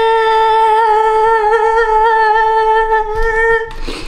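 A woman's voice holding one long, steady vocal note with a slight waver, breaking off shortly before the end.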